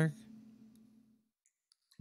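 A man's spoken word ends as the clip begins, its low tail fading out over about a second, followed by a quiet pause with a few faint clicks; speech starts again at the very end.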